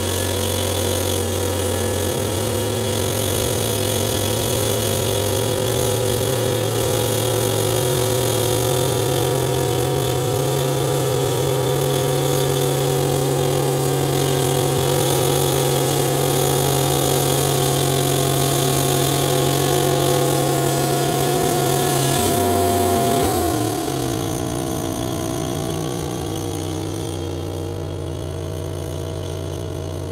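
Wood-Mizer LT40 band sawmill's engine running steadily under load while the band blade saws through a spalted maple log. The engine note steps up about two seconds in. About three-quarters of the way through it drops to a lower, quieter running note as the cut ends.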